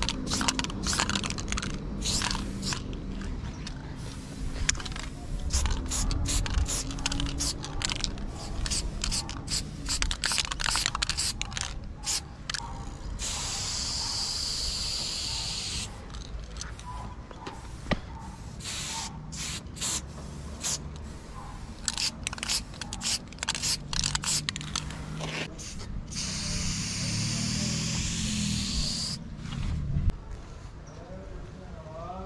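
Aerosol spray paint cans hissing in many short bursts, with two longer, steady sprays about halfway through and again near the end.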